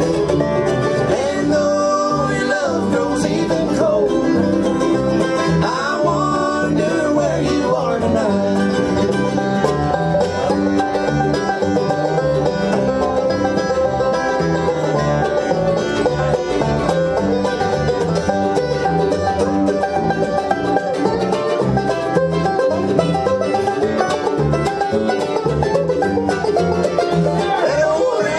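Live acoustic bluegrass band playing an instrumental break: banjo, dobro, mandolin and acoustic guitar over upright bass, with sliding dobro-like notes in the first few seconds.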